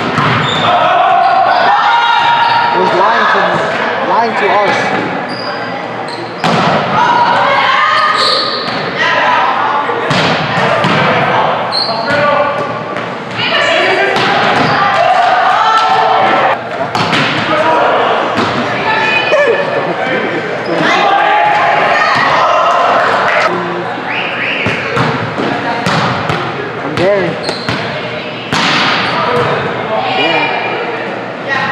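Volleyball play in a reverberant gymnasium: repeated sharp hits and bounces of the ball, with players' voices calling out and chattering throughout.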